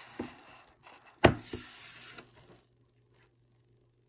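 A cardboard phone-case box handled and set down on a wooden table: soft rubbing and small taps, with one sharp knock a little over a second in.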